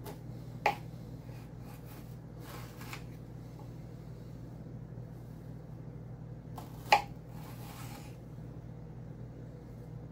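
Kitchen knife slicing jalapeño peppers lengthwise on a wooden cutting board: two sharp knocks of the blade meeting the board, about a second in and again near seven seconds, with faint scraping and rustling between.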